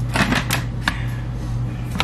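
A few short crinkles and clicks as a plastic stand-up pouch of melting wafers and a plastic dipping-chocolate tub are handled, over a steady low hum.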